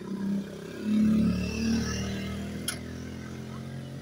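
Motorcycle engine running close by, getting louder about a second in and then slowly fading as the bike passes and slows.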